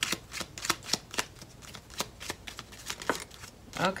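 A deck of tarot cards being shuffled by hand, the cards slapping together in quick, irregular clicks, several a second, as the reader shuffles for a clarifying card.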